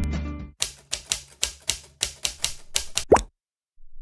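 The background music ends, then a run of keyboard-typing clicks, about four a second, closes with one short cartoon 'plop' that falls quickly in pitch.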